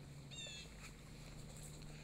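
Faint outdoor ambience: a steady low hum, with a single short bird chirp about half a second in.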